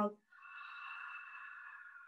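A woman's long audible exhale through the mouth, a cleansing breath in yoga practice, lasting about two seconds and fading out.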